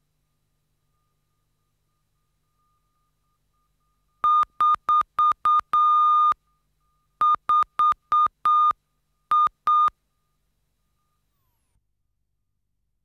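Electronic beep tone, one high steady pitch, keyed on and off: five short beeps and a longer one, a short pause, four short beeps and a longer one, then two short beeps. A faint steady tone of the same pitch runs underneath. It is a tape leader or test signal between recorded segments.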